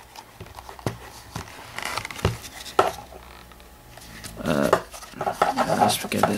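Leather knife sheath with metal snap fittings being handled and turned over: a few scattered soft clicks and knocks, then louder handling noise near the end.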